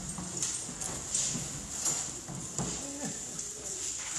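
Faint, scattered murmured voices with a few light taps and rustles.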